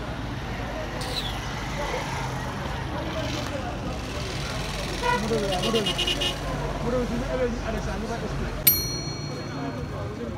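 Street sounds: people talking in the background over a low, steady vehicle engine hum, with a sharp metallic clink that rings briefly near the end.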